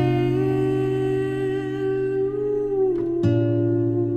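Male voice singing a long wordless held note over acoustic guitar, with a second held note starting about three seconds in.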